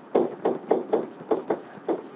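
Pen stylus tapping and scraping on a SmartBoard interactive whiteboard while writing a word by hand: a quick, uneven run of short knocks, about four or five a second.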